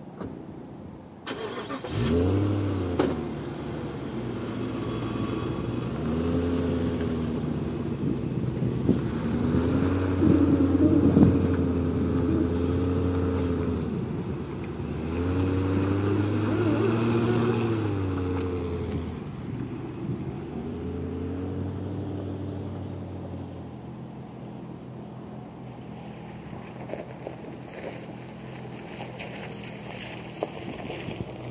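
2002 Jeep Grand Cherokee's V8 engine pulling under load in four-wheel-drive high range, revving up and easing off in about five surges with the pitch rising and falling. It then fades to a lower steady sound as the Jeep drives off.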